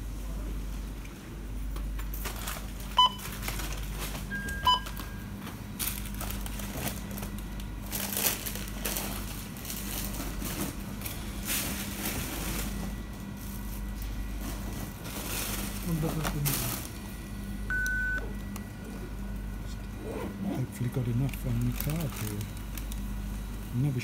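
Shop checkout beeps: two short electronic bleeps about three and five seconds in as items are scanned, and one longer beep near eighteen seconds as a card is presented to the payment terminal. Handling rustles and clicks and low voices run underneath over a steady hum.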